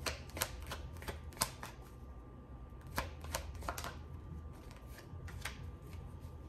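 A deck of tarot cards being shuffled by hand, with irregular crisp snaps of the cards striking each other, some in quick clusters.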